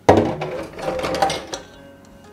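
A utensil stirring and scraping wet flour-and-egg dough against the side of a metal mixing bowl. The sound starts suddenly and lasts about a second and a half.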